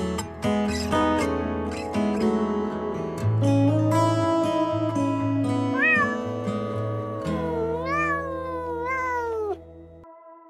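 Domestic cat meowing a few times in the second half, each call sliding up and then down in pitch, over background music of plucked guitar and steady bass notes. The music drops out shortly before the end.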